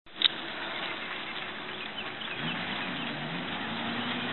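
Steady road traffic noise with a vehicle engine droning, and a sharp click just after the start.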